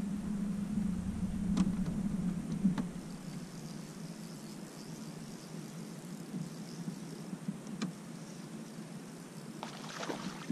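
Low steady hum of a bass boat's electric trolling motor in the first few seconds, fading after that, with a few light ticks. Right at the end comes a splash as a hooked largemouth bass breaks the surface beside the boat.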